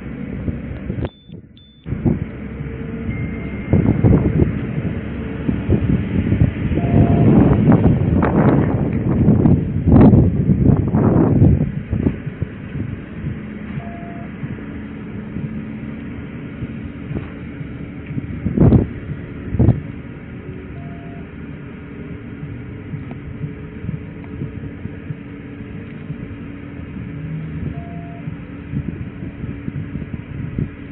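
Steady low hum of an idling police patrol car, broken by several seconds of louder rustling and knocking close to the microphone and two more knocks later. A short faint beep recurs about every seven seconds.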